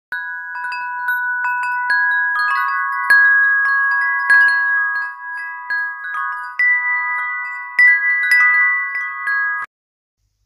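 Wind chimes ringing, with many overlapping tones struck again and again, cutting off abruptly just before the end.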